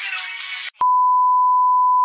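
Music cut off abruptly by a click, then one steady high-pitched electronic beep held for just over a second, the kind of tone edited in as a censor bleep.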